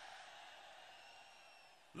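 Near silence: a faint background hiss that slowly fades away.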